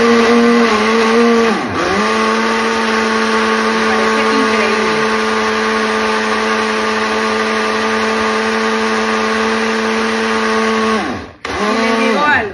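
Smeg personal blender puréeing papaya, its motor running with a steady hum. It stops briefly about two seconds in, starts again, and winds down to a stop near the end.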